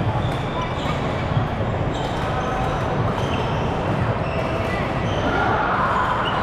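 Busy indoor badminton hall: many short, high squeaks of court shoes on the wooden floor and footfalls, over a steady background of people talking.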